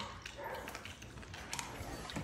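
Bandog puppy eating raw chicken from a metal feed bowl: faint wet chewing with a few small clicks.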